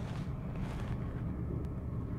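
A steady low rumble with a faint hiss above it.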